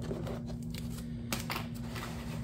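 Paper envelopes rustling as they are flipped through in a plastic storage box, with a few short, light clicks of the plastic.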